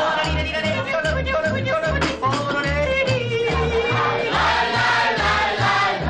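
A singer yodeling over a band accompaniment, with a steady alternating bass beat.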